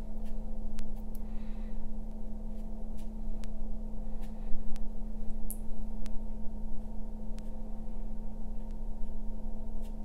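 Steady low electrical hum of the recording, with scattered faint ticks and a soft rustle about a second in.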